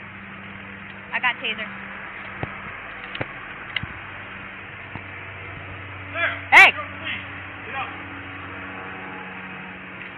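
Indistinct shouting voices: a short shout about a second in and a louder, longer shout a little past the middle, over a steady low hum with a few small clicks.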